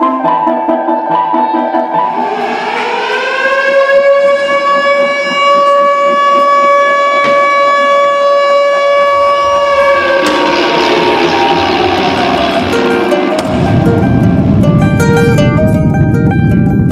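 Upright piano played fast. Then a siren-like tone rises, holds steady for about seven seconds and falls away. Near the end a loud low rumbling noise comes in under plucked-string music.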